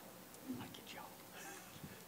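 Faint murmured speech, low and well below the level of the amplified voice before it.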